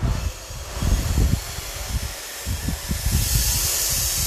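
A steady hissing noise with irregular low rumbling underneath, the hiss growing brighter about three seconds in.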